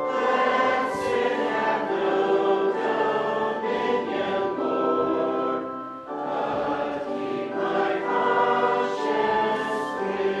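Congregation singing a hymn together, sustained sung lines in phrases with short breaks between them.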